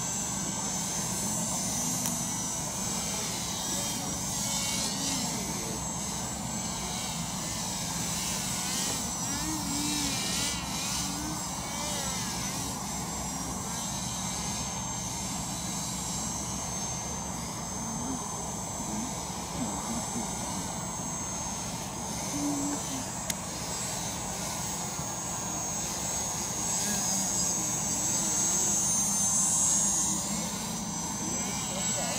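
Propeller motors of two RC paramotor paragliders running in flight: a steady high whine whose pitch wavers as the models turn and pass, growing louder near the end as one flies closer.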